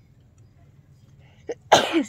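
A person sneezing once near the end, with a short catch of breath just before it.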